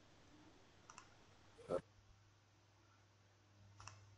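Near silence broken by a few faint short clicks, the clearest a little under two seconds in, over a faint steady low hum.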